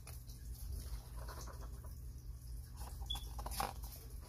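Paper pages of a paperback coloring book being handled and turned by hand, with soft rustles and a stronger page turn near the end, over a steady low hum.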